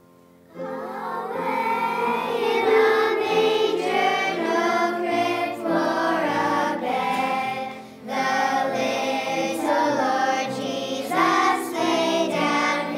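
A church choir of children and adults singing with accompaniment. The choir comes in about half a second in, after a quiet held note, and breaks off briefly about eight seconds in.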